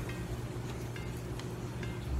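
Quiet room tone with a steady low hum, and a few faint light ticks as a steel cable leader and circle hook are handled in the fingers.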